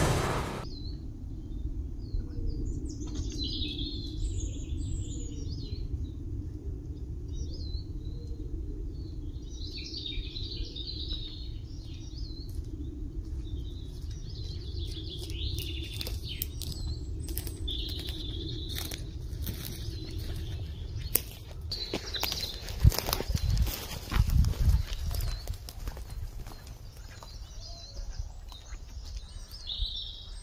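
Small birds chirping and singing in a conifer forest over a steady low rumble of outdoor background noise. Just past twenty seconds in comes a run of louder knocks and crackles, footsteps and twigs on the forest floor close to the microphone.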